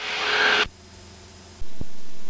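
Hiss of static on the cockpit intercom, cutting off abruptly about two-thirds of a second in. A much fainter low hum follows.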